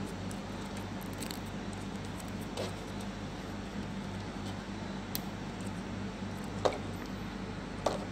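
Dell desktop computer running with a steady low hum from its power supply and fans. A few sharp clicks come in the second half as the power-switch bypass wire is handled.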